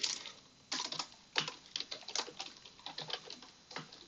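Typing on a computer keyboard: an irregular run of keystroke clicks that starts a little under a second in.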